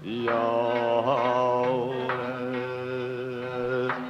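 Traditional Uzbek singing: a voice slides up into one long held note, with a brief waver about a second in.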